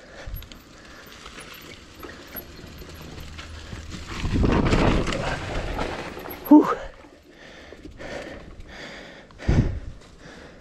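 Mountain bike rolling down a dry leaf-covered dirt trail: tyres rushing over leaves and dirt with the bike's mechanical rattle, the noise swelling loudest from about four to six seconds in. A short sharp sound comes about two-thirds of the way through and a brief loud thump near the end.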